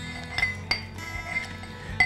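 A muddler crushing lime wedges in the bottom of a drinking glass, giving a few sharp clinks, the clearest two under half a second apart, over steady background music.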